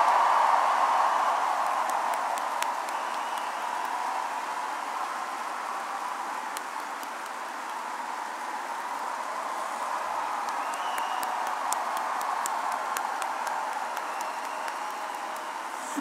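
Large arena crowd applauding and cheering, loud at first, dying down over the first several seconds and then holding at a lower level.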